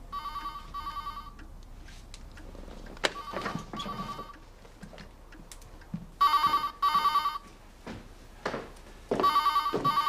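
Telephone ringing in the British double-ring pattern, two short rings then a pause of about two seconds, repeated four times; the first two pairs are fainter and the later ones loud. A few soft knocks come between the rings.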